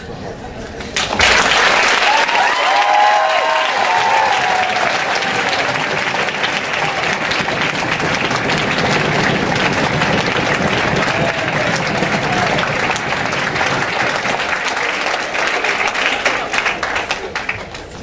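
A large audience applauding, starting suddenly about a second in and dying away near the end, with a few voices cheering in the first few seconds.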